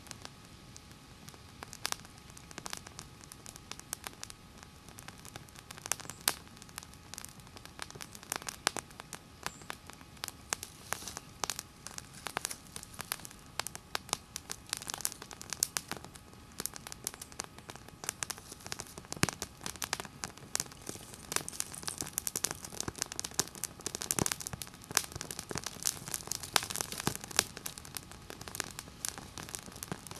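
Small fire crackling in a bundle of dry grass stalks, with sharp irregular pops and snaps that come thicker in the second half, mixed with the rustle of dry stalks being handled.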